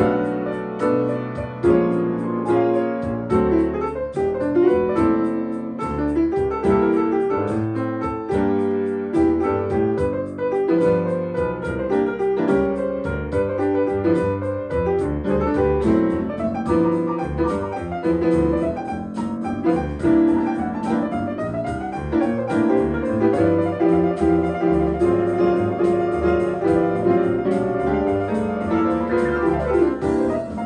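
A 1915 player piano (pianola), driven by MIDI, plays a song on its own keys, backed by computer-generated bass and drums keeping a steady beat.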